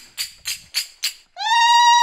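Four quick, evenly spaced sharp strikes with a metallic ring, then a woman's long, high-pitched sung note, held and rising slightly, that starts about a second and a half in.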